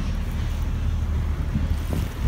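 Wooden speedboat under way: a steady low engine rumble with water rushing past the hull and wind buffeting the microphone.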